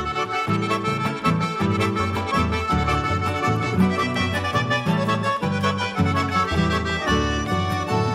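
Instrumental passage of a Paraguayan polka band, with an accordion carrying the melody over a steady, bouncing bass rhythm and no singing.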